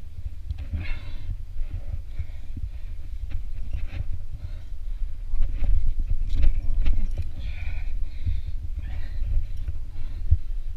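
A rock climber breathing hard while climbing, with voiced, effortful exhalations about a second in and again around seven to eight seconds, over a steady low rumble on the body-worn camera's microphone. Small clicks and scrapes of hands and gear on the rock come through here and there.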